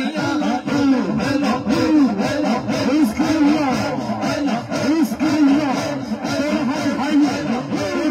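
A crowd of men chanting a devotional zikr together in a fast, repeated rhythm, loud, many voices overlapping.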